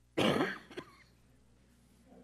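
A person clears their throat with one short, loud cough-like burst, followed by a smaller second one just after.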